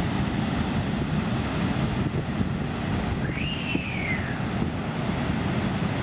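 Heavy Atlantic breakers crashing: a steady, deep rumble of surf, with wind buffeting the microphone. A single bird call rises and falls in pitch a little after three seconds in.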